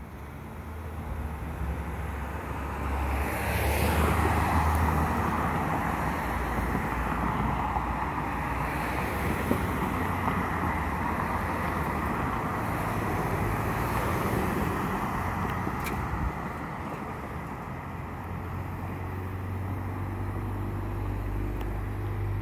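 Road traffic: cars pulling away and driving past through the intersection, a haze of tyre and engine noise that swells about three seconds in and then stays fairly steady over a low engine hum.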